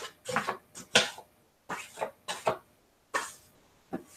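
Paper sheets and card being handled and tossed aside, heard as a string of short, irregular rustles and flaps.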